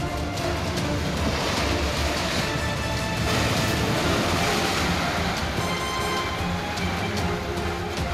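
A three-storey building collapsing: a long rush of crashing, falling concrete and debris that builds about half a second in and dies away after about five seconds, over background music.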